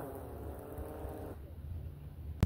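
DJI Mavic 3 quadcopter's propellers whirring on the ground with a slightly falling pitch, then dying away about one and a half seconds in as the motors shut down after landing.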